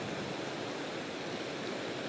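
Steady rush of fast whitewater in river rapids just below a dam: an even, unbroken hiss of churning water.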